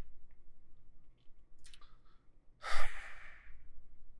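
A man breathing out in one short sigh close to the microphone, a little under three seconds in, over quiet room tone.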